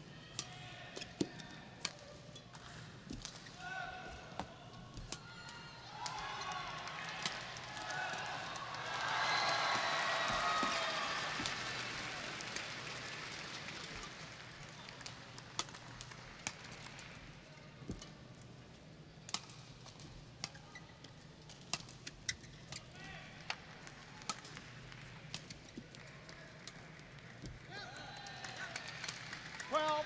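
Badminton rally in an arena: sharp clicks of rackets striking the shuttlecock scattered throughout, with the crowd shouting and cheering, swelling to its loudest about nine to eleven seconds in and again near the end.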